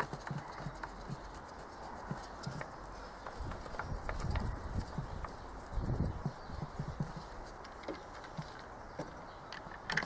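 Hands fitting the plastic air box lid and intake duct in a van's engine bay: scattered light plastic clicks and knocks, with duller low thumps about four and six seconds in.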